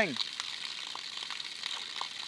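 Spring water running steadily, a soft even hiss with a few faint ticks.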